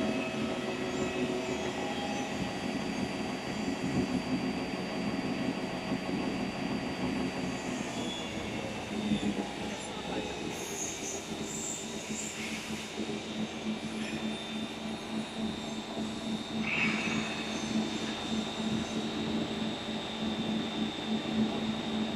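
A three-colour 650 film printing machine with double drying ovens running: a steady mechanical drone with several sustained hums and whines as the printed film web runs through the rollers.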